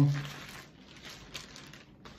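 Clear plastic wrapping crinkling softly as it is handled, with a couple of sharper crackles.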